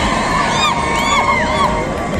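Roadside crowd cheering and shouting, with many high-pitched voices whooping in short rising-and-falling calls.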